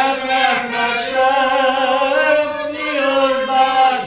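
A small group of elderly village folk singers, men's voices to the fore, singing a Hungarian folk song unaccompanied, with long held notes.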